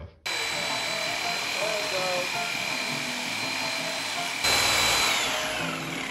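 Corded electric reciprocating saw cutting through the cast CVT case of a mini ATV: the saw runs steadily with a high whine, gets louder about four and a half seconds in, then the motor's pitch slides down as it winds off near the end, once the blade is through.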